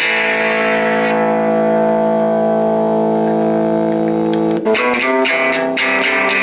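A 1963 Fender Telecaster played through a 1950 Magnatone Varsity tube amp's small 8-inch speaker. A chord is struck and left to ring for about four and a half seconds, then quick picked and strummed playing starts again near the end.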